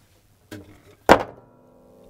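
A large flat board set down hard on a tabletop: a light tap about half a second in, then one sharp thud about a second in, followed by a faint ringing.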